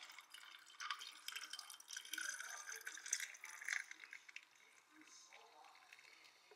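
Carbonated soda poured from a can over ice into a glass, the liquid splashing and fizzing faintly; it thins out after about four seconds as the stream slows.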